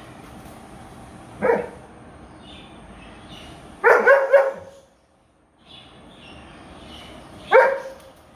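Dogs barking in rough play: a single bark about a second and a half in, a quick run of several barks around four seconds, and one more bark near the end.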